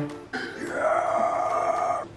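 A person's voice in a long, drawn-out wail, starting about a third of a second in and held steady for about a second and a half before it cuts off abruptly.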